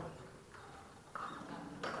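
Quiet room tone of a hall during a pause in amplified speech, with a faint, brief voice sound about a second in and a sharp click just before the man speaks again.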